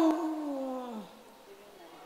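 A woman's voice holding one drawn-out syllable for about a second, sliding down in pitch, then quiet room tone.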